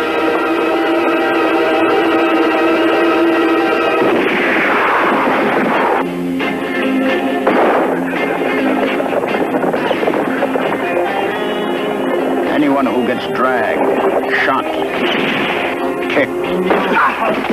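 Western film trailer soundtrack: a held musical chord for the first few seconds, then loud dramatic music with bursts of gunfire and crashing action noise from about four seconds in.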